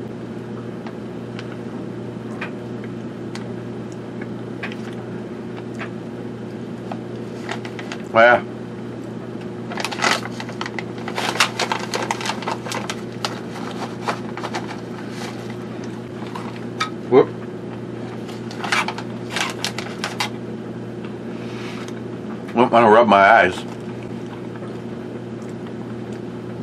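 Crackling and rustling of a plastic snack pouch being handled, in clusters of short clicks, over a steady low hum from the room. Three brief muttered vocal sounds break in, the longest near the end.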